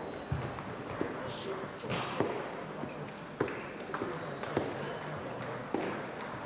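Table tennis ball knocking a few times at uneven intervals on bat, table and floor, over a steady murmur of voices in the hall, with a brief high squeak about one and a half seconds in.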